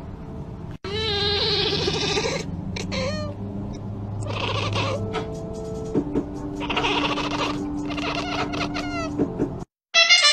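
A cat making a series of meows and chirping calls in several separate bouts. The sound cuts off just before the end.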